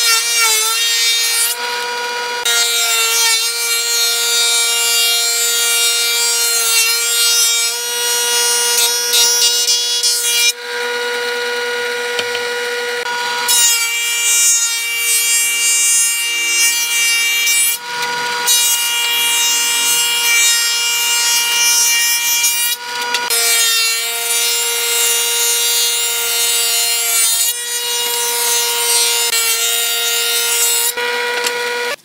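Combination jointer-thickness planer running, its cutterhead giving a steady high whine. Boards are fed through the thickness planer in several passes: loud cutting noise while each board is planed, dropping back to the bare whine in short gaps between boards.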